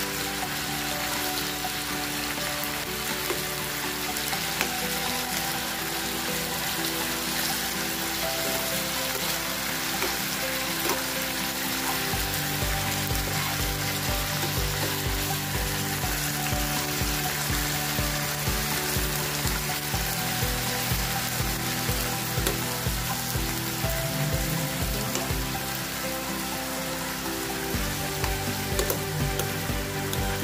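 Beef, broccoli and carrots sizzling in a nonstick frying pan as they are stir-fried and turned with a metal spoon, a steady frying hiss. Background music with sustained chords plays along, and a steady beat comes in about twelve seconds in.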